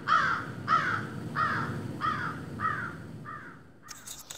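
A crow cawing in a steady series: about six caws, one every two-thirds of a second, growing fainter toward the end, over a steady low rumble.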